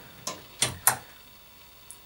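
Accuride 9308 heavy-duty lock-in/lock-out drawer slide being pulled open with its release lever held down: three short metallic clicks in the first second, and a faint one near the end.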